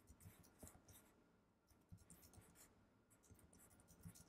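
Near silence with faint, irregular clicks of typing on a computer keyboard.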